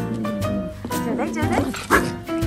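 Background music, with a toy poodle giving a run of high-pitched yips in the second half and a sharper bark just before the end.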